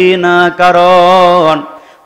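A man's voice holding one long chanted note with a wavering pitch, the melodic intoning of a Bengali waz sermon, fading out about one and a half seconds in.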